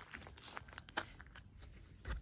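Faint footsteps crunching through dry grass, a run of irregular crackles and rustles with one sharper crack about a second in.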